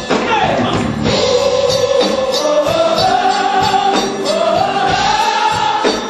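Mixed gospel choir singing with a drum kit, holding long notes that bend up and down over a steady beat.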